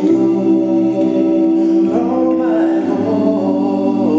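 Male a cappella vocal group of five singing long, held gospel chords through microphones, moving to a new chord about three seconds in.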